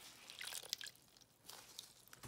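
Faint water dripping and splashing in a wash tub as a handful of wet raw wool fleece is squeezed out under the water and lifted clear, in a few scattered small drips and splashes.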